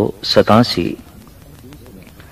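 A man speaking in Punjabi during a Sikh katha discourse, stopping about a second in; after that only faint background sound remains.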